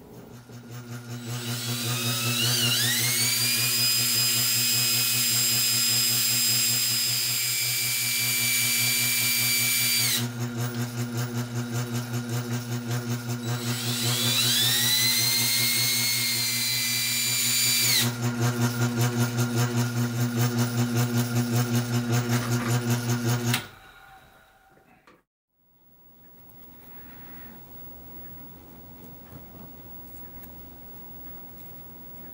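Bench sharpening machine's electric motor running with a steady hum while a fine steel pointing tool is sharpened on its spinning wheel. Twice, for several seconds each time, the point held against the wheel sets up a high whine that rises and then holds. The motor cuts off about three-quarters of the way through.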